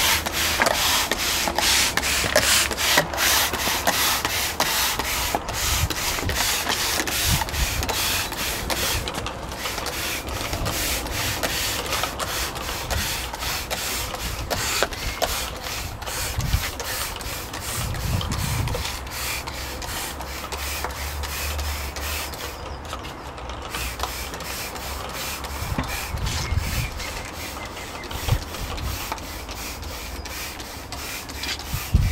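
Hand-pump flit sprayer worked in quick repeated strokes, each stroke giving a short hiss of fine mist, with a brief pause past the middle.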